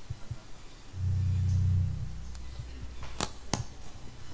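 A low held note from the stage band's instruments, starting about a second in and lasting about a second, then two sharp clicks close together near the end.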